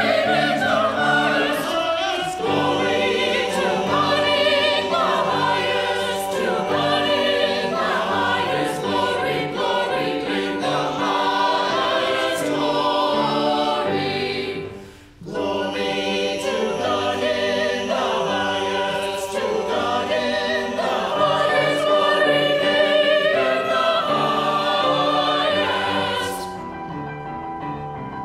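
A small mixed church choir of men's and women's voices singing a choral anthem together, with a brief break about halfway through before the singing resumes.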